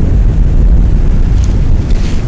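Wind blowing on the microphone, a loud, steady low rumble.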